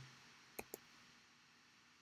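Near silence: faint room tone, broken by two short clicks in quick succession just over half a second in.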